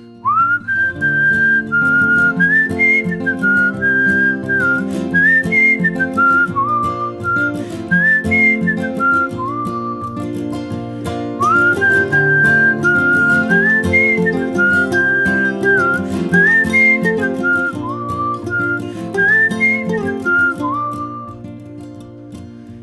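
Whistled melody over strummed acoustic guitar in a folk song's instrumental break. The whistle scoops up into its first note and plays the same phrase twice.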